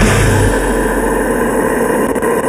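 Progressive deathcore track in a harsh, noisy, distorted passage; the deep bass drops out about half a second in, leaving a dense wall of mid and high noise.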